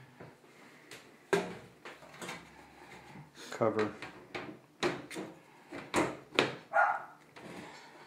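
A metal PC-case side panel being set on and slid into place, with a string of sharp knocks and scrapes of metal on metal.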